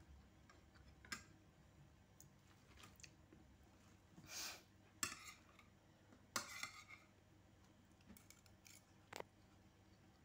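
A quiet room with a few short scratchy sounds and light clicks of a pencil on paper and small objects handled on a table, the loudest scratches about four and a half and six and a half seconds in.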